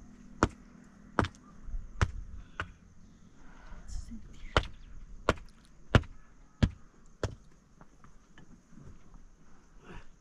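Sharp knocks of a hard tool striking stone as a stone wall is built, about nine strikes, roughly one every two-thirds of a second, with a short pause in the middle, stopping about seven seconds in.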